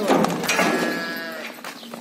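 A Sardi sheep gives one drawn-out bleat of about a second, starting half a second in, after a brief clatter.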